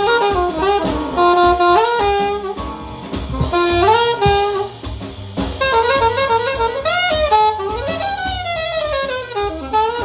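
Alto saxophone with a 10MFAN Showboat mouthpiece playing a jazz blues line live: quick runs of notes with bends, ending in a long falling phrase near the end, with drums behind it.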